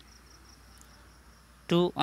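Near silence with a faint, steady high-pitched tone in the background, then a man's voice says "two" near the end.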